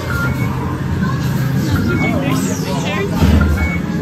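A loud, dense haunted-maze soundscape: indistinct voices and music-like sound, with short high electronic beeps at two pitches recurring every second or so. A deep low rumble swells a little past the middle.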